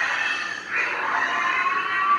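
Animatronic alien-in-a-tube Halloween prop playing its sound effect through its built-in speaker: a hissy, eerie electronic noise over a steady tone that drops lower a little past halfway and holds.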